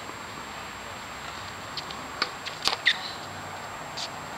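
Tennis ball bouncing on a hard court: a handful of sharp knocks close together about two to three seconds in, over a steady outdoor background hiss.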